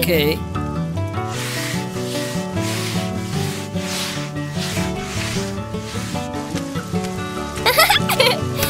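Push broom sweeping a floor in repeated brushing strokes, about two a second, as a cartoon sound effect over background music. A short squealing voice comes near the end.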